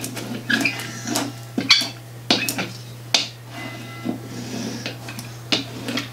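A brayer (hand roller) rolled back and forth over a sheet of holographic iron-on vinyl on a cutting mat, pressing it down: a series of short, irregular strokes.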